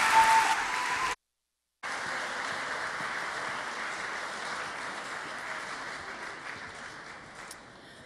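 Audience applauding after a talk ends, broken by a short gap of dead silence about a second in; the applause then dies away gradually.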